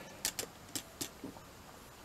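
Small, sharp plastic clicks from a Lego Technic B2 Super Battle Droid model as its arm is moved by hand: about five clicks in the first second and a bit, then quiet handling noise.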